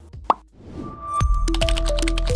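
Television end-card ident: a sharp pop about a third of a second in, a swelling whoosh, then ident music with deep bass and a stepping melody from a little over a second in.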